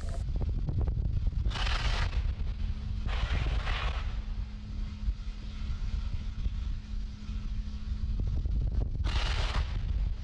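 Pad microphone ambience beside a fuelled Falcon 9 rocket venting liquid-oxygen boil-off: a steady low rumble with a faint hum, broken by three short hissing bursts, about a second and a half in, about three seconds in and near the end.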